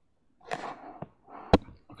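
Short rustling noises and a couple of clicks, the loudest a single sharp knock about one and a half seconds in.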